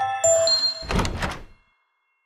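End of a short musical logo sting: bright chime-like tones, then a low thud about a second in that fades away within half a second.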